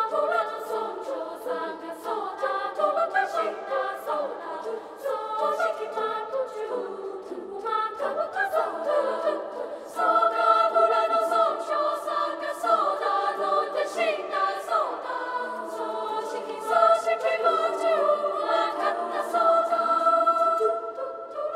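Children's choir singing a cappella: many voices holding close, shifting chords, with crisp repeated consonant attacks, growing louder about halfway through.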